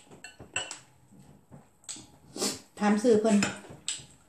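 A metal spoon clinks a few times against a glass serving bowl of soup, in short, sharp ticks. In the second half a woman speaks with her mouth full.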